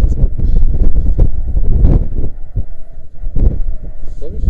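Wind buffeting the microphone of a body-worn action camera, a loud, gusting low rumble with a few brief knocks in it.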